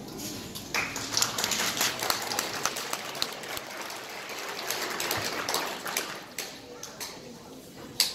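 Audience clapping, starting sharply about a second in and dying away near the end, with crowd voices mixed in.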